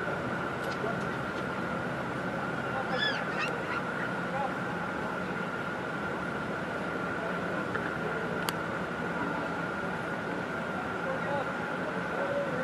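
Steady hum filling an indoor soccer dome, with faint distant shouts from players a few seconds in. A single sharp knock comes about two-thirds of the way through.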